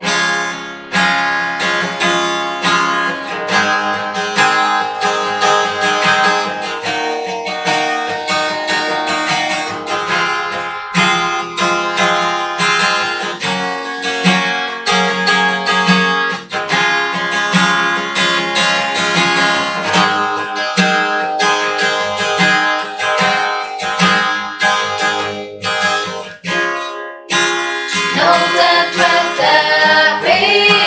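Acoustic guitar strumming chords in a steady rhythm, a song introduction, with singing voices coming in near the end.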